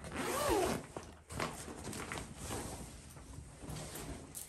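Zipper on a fabric storage bag being pulled open, a run of short stop-and-start rasps.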